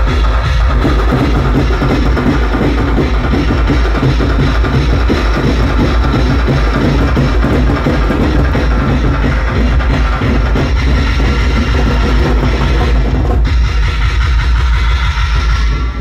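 Loud amplified music from a banjo band party playing on a truck-mounted speaker system, with heavy bass and drums. It continues unbroken, thinning out a little near the end.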